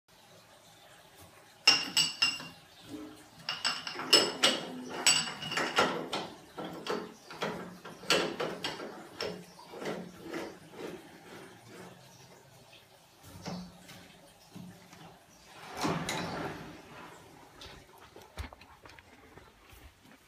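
Metal clanking and knocking: a run of sharp metallic strikes with a ringing tone, thinning out to scattered knocks, with a short rushing noise near the end.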